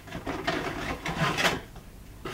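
Cardboard packaging being handled and pulled out of a toy box: irregular scraping and rubbing of cardboard against cardboard, dying away near the end.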